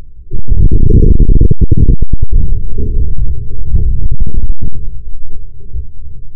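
A sudden, loud, distorted low rumble that lasts about four seconds, with a few sharp clicks and knocks through it, recorded through a car's dashcam microphone.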